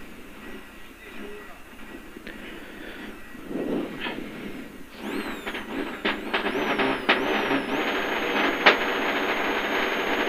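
Rally car engine idling low, then revved up in steps from about halfway and held at a steady high pitch, with sharp crackles between, as the car waits at the start line ready to launch.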